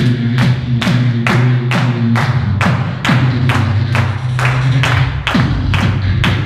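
Live beatboxing through a microphone and PA: a steady beat of sharp percussive hits, about two and a half a second, over a sustained low bass hum.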